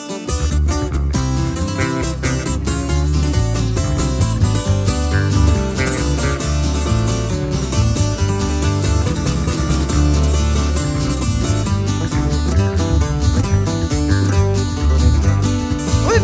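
Instrumental intro of a corrido band: two acoustic guitars, one a twelve-string, picking and strumming a quick melody over an electric bass guitar. No singing.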